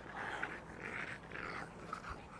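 A dog panting faintly, about two breaths a second.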